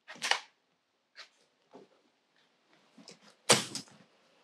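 Telescoping ladder of a hard-shell rooftop tent being pulled out and extended: a knock at the start, a few faint clicks, then a louder clack about three and a half seconds in.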